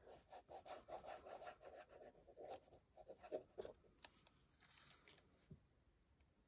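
Faint, quick scratching strokes of a glitter-glue applicator tip being worked over paper, followed by a few light clicks and a small tap near the end.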